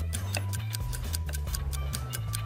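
Background music with a steady clock-like ticking, about six or seven ticks a second, over a low bass line.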